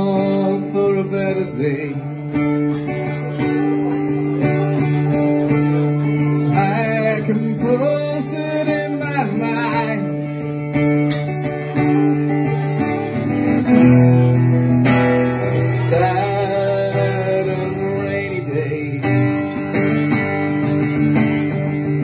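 Live acoustic guitar playing chords, with a man singing over it in places.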